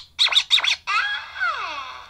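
A production-logo audio sting: quick, choppy, high-pitched voice-like sounds in the first second, then a sound that slides down in pitch and fades out.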